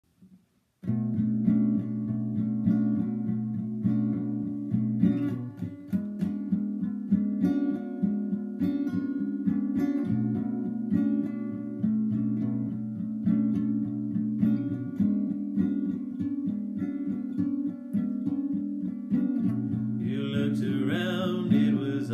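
Acoustic guitar played in a repeating chord pattern. A man's singing voice comes in near the end.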